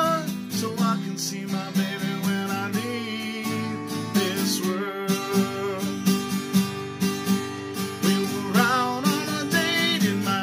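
Acoustic guitar with a capo, strummed in a steady rhythm, with a wavering sung line coming in over it at a few points.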